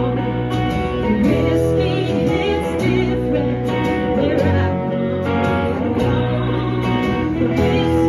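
Live country band playing: strummed acoustic guitar and electric guitar over changing low bass notes, with singing.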